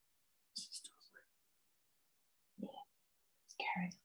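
A man's voice speaking very softly, close to a whisper, in three short fragments with quiet gaps between them.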